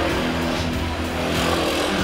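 A car engine running steadily, under background music.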